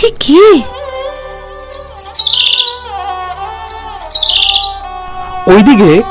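Soft background music of long held notes, with two short bursts of high bird chirping, about two and four seconds in. A voice speaks briefly at the start and again near the end.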